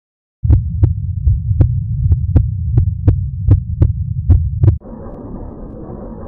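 Video intro sound effect: a loud, low pulsing rumble with about a dozen sharp ticks, roughly three a second, starting about half a second in. Near the end it cuts abruptly to a quieter, steady rumbling noise.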